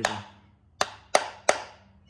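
Hammer tapping a connecting-rod big-end cap on the crankshaft of a Suzuki F10A one-litre engine to knock the cap loose. There is one sharp metallic tap at the start, then three quick taps about a third of a second apart from just under a second in.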